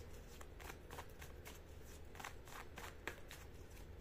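A deck of tarot cards being shuffled by hand: a faint, irregular patter of cards riffling and tapping against each other, several light clicks a second, over a steady low hum.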